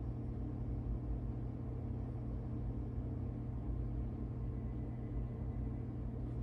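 Steady low mechanical hum of room background noise, even throughout with several low tones.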